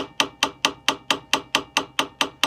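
Small ball peen hammer striking the end of a sword tang cold, in rapid, even blows about four or five a second, each with a short metallic ring. The tang is being peened down to lock the hilt fittings onto the blade.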